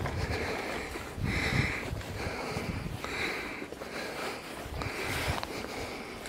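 Rhythmic breaths close to the microphone, about one a second, over irregular low rumbling noise.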